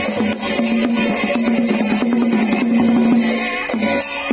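Traditional southern Thai nang talung shadow-puppet ensemble playing: quick, dense drum and gong strokes over a held low tone that breaks off and comes back several times.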